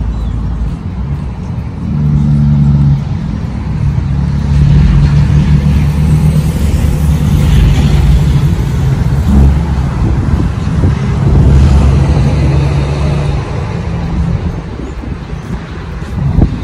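Motor vehicle engine running steadily with a low drone, getting louder about two seconds in and staying loud, with a rushing noise partway through.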